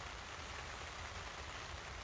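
Faint, steady hiss of rain falling, with a low rumble underneath.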